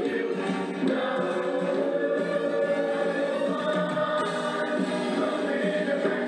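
Music with a choir singing long, held notes, at an even level throughout.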